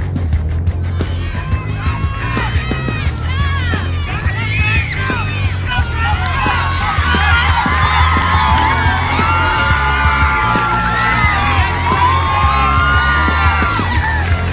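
Rock music with a steady bass line, overlaid from about a second in by a crowd of spectators cheering and yelling, the cheering growing louder and fuller about halfway through.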